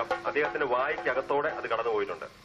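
Men's voices chanting or calling out in quick rhythm, with a steady held tone underneath.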